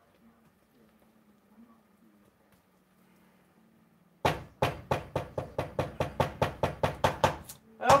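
Near quiet for about four seconds, then a spatula knocking rapidly against a stainless steel mixing bowl, about five or six knocks a second, as it works the whipped cream-cheese mixture.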